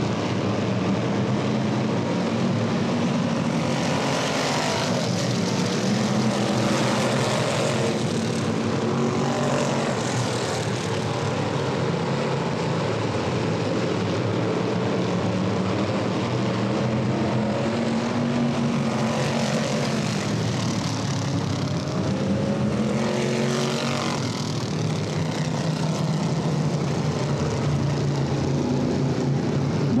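A pack of classic-bodied dirt-track race cars running at racing speed, a continuous engine drone whose pitch swells and bends several times as cars pass.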